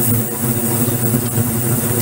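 Ultrasonic cleaning tank running with stainless-steel parts in the bath: a steady low hum that wavers in strength, with a hiss over it.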